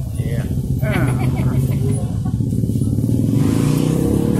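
An engine running steadily close by, a constant low hum, with brief voices about a second in.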